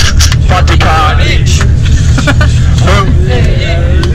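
Steady low rumble of a coach bus's engine heard from inside the passenger cabin, with passengers' voices chatting over it and a few small clicks.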